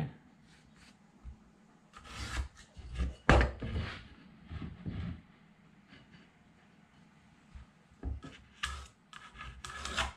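Pencil scratching lines along a metal level laid on a pine board, with the level sliding and knocking on the wood in short scrapes and knocks; the loudest comes a little over three seconds in.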